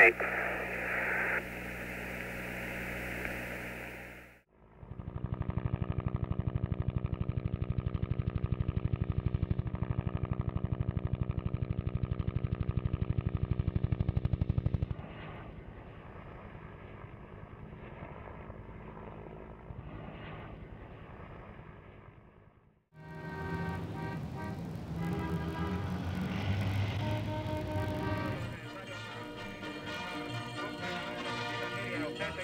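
Apollo 17 air-to-ground radio with static, ending on a last word, for the first four seconds. Then a loud, rapid, even mechanical thudding for about ten seconds, which carries on much quieter until a break; music starts near the end.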